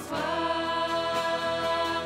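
A worship group of several voices singing a hymn together with acoustic guitar, holding long notes.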